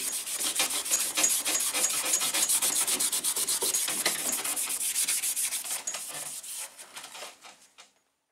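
A red abrasive scuff pad is rubbed back and forth by hand over a car's door jamb in quick strokes, several a second. The scrubbing dies away about six seconds in. This is scuffing the old finish so the new paint has something to bite to.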